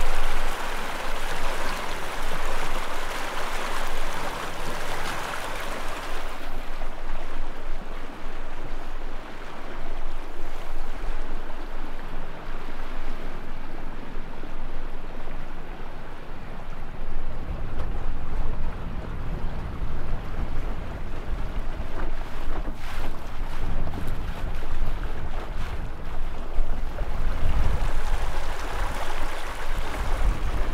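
Water rushing and splashing past an inflatable dinghy under way on a small electric outboard. The wash is brighter for the first six seconds. In the second half, wind buffets the microphone in heavy low gusts.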